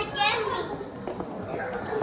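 Children playing, with a child's high-pitched shout right at the start, then quieter children's voices.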